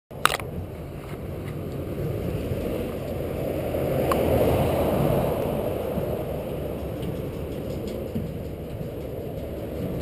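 Steady rumble of motorway traffic mixed with the noise of a bicycle moving along a dirt track, swelling toward the middle and easing off. One sharp click comes just after the start.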